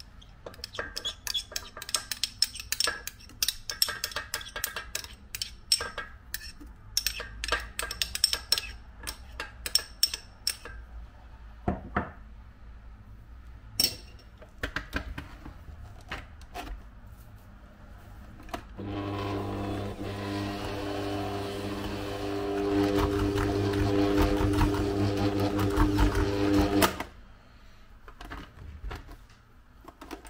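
Scattered light clicks and taps for the first ten seconds or so. Then a stand mixer's motor runs steadily with a hum, its beater working crumbly pastry dough in a steel bowl, for about eight seconds before it stops suddenly.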